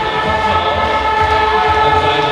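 A long, steady horn blast, one held tone, sounding over crowd noise in an indoor sports hall.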